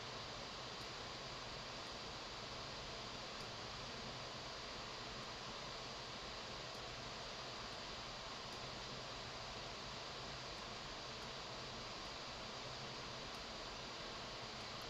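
A computer's cooling fan running with a steady, even hiss.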